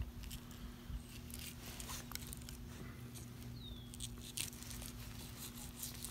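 Fillet knife slicing a rock bass fillet off the skin against a plastic cutting board: faint, scattered scratching and small clicks over a low steady hum.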